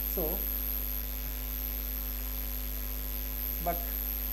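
Steady electrical mains hum in the recording, low and unchanging, with a faint high whine above it. A voice speaks one short word at the start and another near the end.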